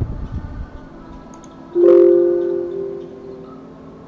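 Windows system alert chime: a short chord of a few tones that sounds once, a little under two seconds in, and fades over about a second and a half, announcing a Visual Studio warning dialog that asks to confirm removing the Git remote. A few low, muffled bumps come just before it, near the start.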